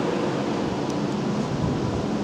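Steady, even noise beside a Tokyo Metro 10000 series train standing at a platform: the train's running equipment and the platform ambience.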